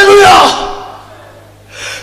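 A man's loud cry into a microphone. His voice rises and falls in pitch over about half a second, then trails off in the hall's echo, and a quick breath in comes near the end.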